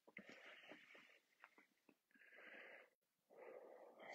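A man breathing faintly: a few breaths in and out, each about a second long.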